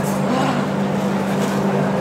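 Steady low machine hum over a continuous din of noise, with faint voices in the background.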